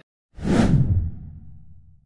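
A whoosh sound effect: a rush of noise starting about a third of a second in that sweeps downward in pitch and settles into a low rumble, which fades away over the next second and a half.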